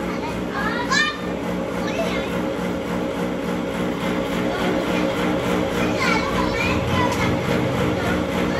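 Children's voices call out briefly about a second in and again around six seconds in. Underneath, a running cotton candy machine keeps up a steady hum.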